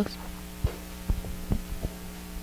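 Steady electrical hum in the microphone line with a few soft low thumps, four in under two seconds, from a handheld microphone being handled and lowered.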